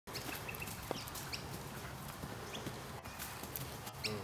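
A young foal's hooves on loose dirt and leaf litter as it canters: soft, irregular knocks, with a few short high chirps in the background.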